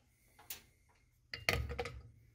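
A metal shell-spinner ring with its motor being set down on a glass-topped kitchen scale. There is a light click about half a second in, then a short clatter of metal knocking on glass around a second and a half in.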